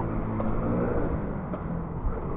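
A motor vehicle engine running with a steady low hum, over general street noise.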